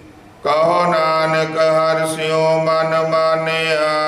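Sikh kirtan chanting: a man's voice over a sustained harmonium chord, coming back in about half a second in after a brief pause and then held steady.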